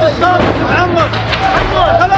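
Men's voices shouting in Arabic, loud and high-pitched, over a steady background music track.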